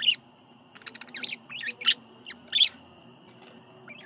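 Budgerigars chirping in short, sharp bursts, four bunches of quick calls in the first three seconds, the loudest about two and a half seconds in.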